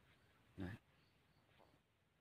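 Near silence outdoors, broken once about half a second in by a single short spoken word.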